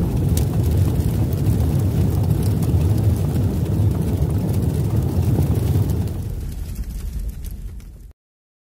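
Logo-intro sound effect: a deep, steady rumble that fades over the last two seconds and stops abruptly just after.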